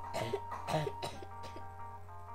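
A young woman coughing into her hand, two coughs and a smaller third in about the first second, while she is getting over a cold. An instrumental backing track plays steadily underneath.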